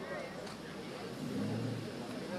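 A car's engine running low, swelling in the second half, over a background of voices.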